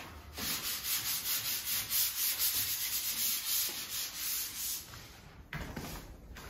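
Sandpaper rubbed over a painted wall in quick, even back-and-forth strokes, about four a second, stopping about five seconds in. It is sanding down small flaws in the paint before repainting. A short knock comes just before the end.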